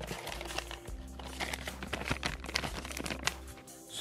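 Plastic bait packs crinkling and rustling as hands rummage through them in a cardboard box, a run of quick crackles, over quiet background music.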